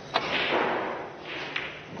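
A snooker cue strikes the cue ball with a sharp click, followed by a second of ball noise on the table and a fainter click about a second and a half in.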